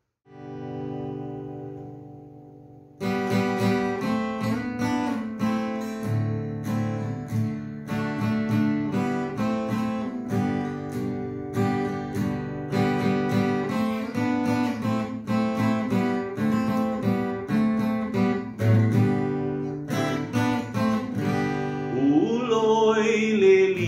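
Solo Epiphone Dove acoustic guitar: a single strummed chord rings out and fades, then, about three seconds in, a steady instrumental introduction of picked notes and strummed chords begins and carries on.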